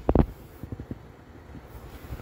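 A short sharp knock about a quarter second in, a few faint taps, then a low rumble of wind or handling noise on the microphone.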